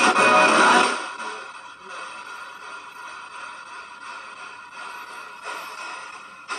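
Spirit box sweeping through radio stations: steady hissing static with choppy snatches of broadcast sound, loudest in a burst in the first second and again in a short burst near the end.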